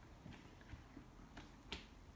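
Near silence with a few faint ticks and one sharper click near the end, from a table knife spreading cream cheese icing over a cake.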